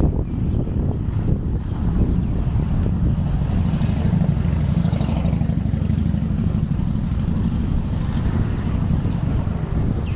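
Wind buffeting the microphone: a loud, steady low rumble, swelling for a couple of seconds about four seconds in.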